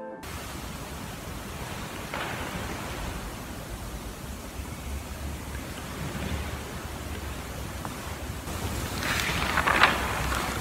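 Steady hiss of room noise with a faint low rumble, broken by a faint click about two seconds in and a short cluster of small clicks and knocks near the end, like objects being handled on an altar.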